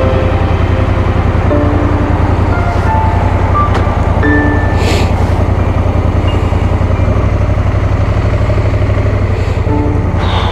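Honda Africa Twin's parallel-twin engine idling steadily while the bike waits at a junction, with the low engine note changing about seven seconds in as it pulls away. Background music with short scattered notes plays over it.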